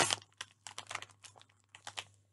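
Plastic candy bag of gummy worms crinkling in the hands: quick, irregular crackles, loudest at the start.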